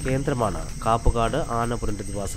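A voice speaking in narration over a steady, high-pitched insect drone, such as crickets make in forest.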